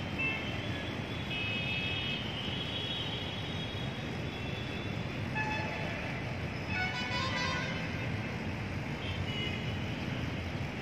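Steady street traffic noise from the city around, with short high vehicle horn toots now and then, the most noticeable about seven seconds in.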